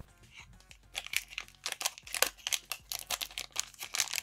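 Plastic foil wrapper of a trading-card pack crinkling and tearing as it is ripped open, in a quick run of short crackles starting about a second in.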